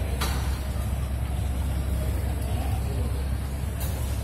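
A steady low rumble, with a sharp knock a fraction of a second in and a short rustle near the end.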